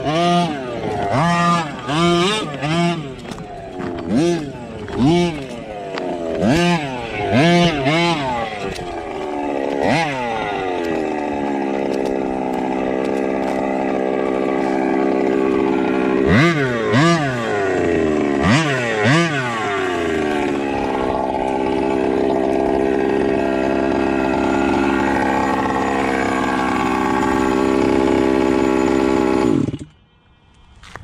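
Losi MTXL 1/5-scale RC monster truck's two-stroke petrol engine revving in short bursts, about one a second, for the first ten seconds, then settling to a steady idle with two quick blips of throttle in the middle. The sound cuts off suddenly at the end.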